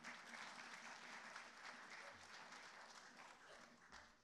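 Audience applauding, faint, starting suddenly and dying away near the end.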